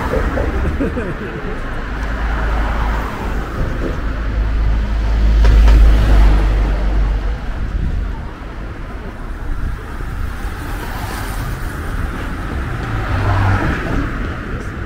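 Street traffic: cars and a motorcycle passing, with a deep low rumble that swells to its loudest around the middle and a smaller swell near the end.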